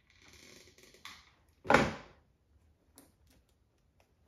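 Handling noises as a boxed toy is pressed into a basket of shredded paper filler. A soft rustle runs for about the first second, a short, louder rustle comes a little under two seconds in, and a faint click follows near three seconds.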